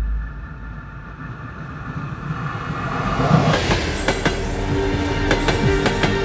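Freight train running on the rails, growing louder, with sharp wheel clicks and squeals over the second half and a steady chord of tones coming in near the end.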